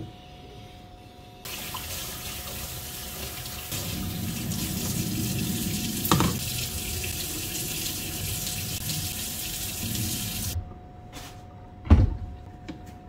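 Kitchen tap running into a stainless steel sink while leafy greens are rinsed. It is turned on about a second and a half in and shut off suddenly near the end, and the splashing gets fuller from about four seconds in, with a sharp click around six seconds.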